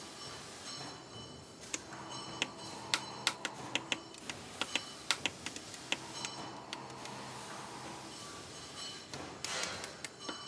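Lego bricks clicking and tapping as small pieces are fitted and pressed onto a baseplate. A quick run of sharp clicks comes in the middle, then a brief rustle near the end.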